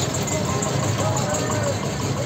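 A vehicle engine idling steadily, with people's voices over it.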